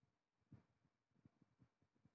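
Near silence: room tone with a few faint, brief low sounds.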